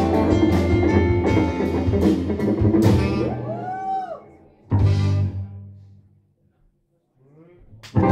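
Live jazz-rock band (saxophone, electric guitars, keyboards, bass and drum kit) playing full out, then breaking off after an arching glide in pitch. A single loud band hit about halfway through rings out and fades to silence, and a rising glide leads into another hit at the very end.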